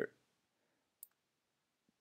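A single computer mouse click about a second in, against near silence.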